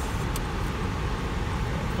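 Inside a moving car's cabin, a steady low road-and-engine rumble runs on, with a couple of faint clicks near the start.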